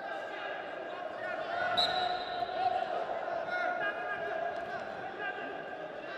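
Wrestling arena sound: coaches and spectators calling out over a busy hall, with one short shrill whistle blast a little under two seconds in, marking the end of the period.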